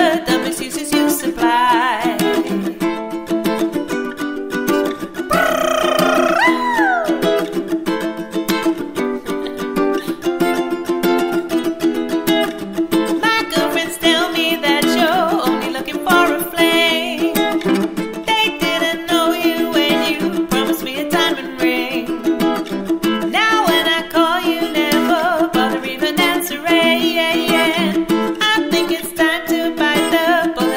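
Solo ukulele strummed in a quick, steady Latin rhythm, with a woman singing over it; one long sung note about six seconds in slides down in pitch.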